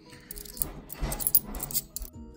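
Handfuls of 10p coins clinking and rattling against each other as they are thumbed through one at a time, a quick run of sharp metallic clicks.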